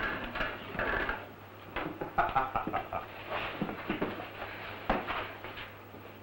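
Fistfight sound effects: scuffling bodies and irregular sharp thuds of blows, with grunts and gasps between them.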